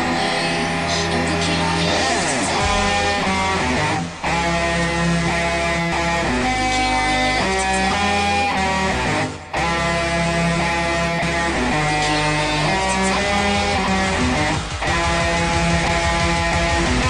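Jackson V-shaped electric guitar playing the riffs of a drum-and-bass track over a backing track with deep, sustained bass. The music drops out briefly three times, about four, nine and a half and fifteen seconds in.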